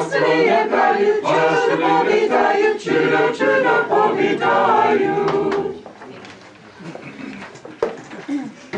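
A small mixed group of men and women singing a Slavonic Christmas carol unaccompanied. The singing stops about six seconds in, leaving a few quiet voices and small noises.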